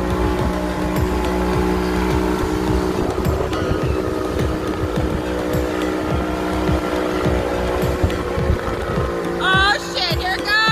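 Motorboat engine running steadily at speed while towing, under a rush of wind and water from the wake. A pitched voice, sung or spoken, comes in near the end.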